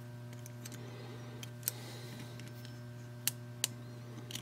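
Scattered small metallic clicks of a hex key engaging and tapping the socket-head clamp screws on a model engine's crankshaft fitting, with two sharper clicks near the end, over a steady low hum.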